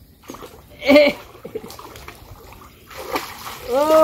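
Water splashing as two boys swim and wade through chest-deep floodwater, growing louder near the end as one churns through it. Two short shouted calls break in, one about a second in and a rising one near the end.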